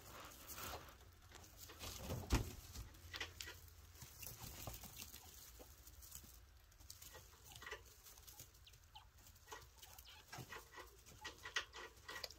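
Chinchilla kits rustling and picking at dry hay: faint, scattered crackles and clicks, with one louder knock a couple of seconds in.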